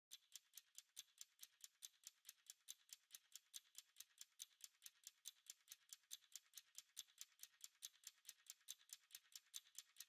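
Near silence, with a faint, even ticking of about six ticks a second.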